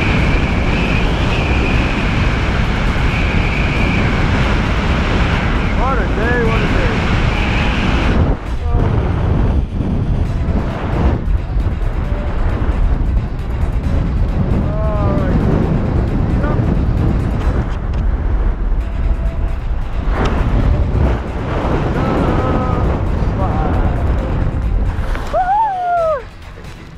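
Wind rushing over a wrist-mounted action camera's microphone during a tandem parachute descent and landing: a loud, steady rush with heavy low rumble. The higher hiss drops away about eight seconds in. Short rising-and-falling voice sounds break through a few times.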